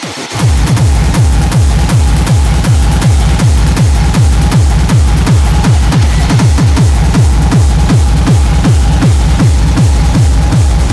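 Hardcore industrial techno: a distorted kick drum at about 160 beats per minute, each hit a falling low thud, over a steady droning tone. The kick comes back in just after the start, following a brief break in the beat.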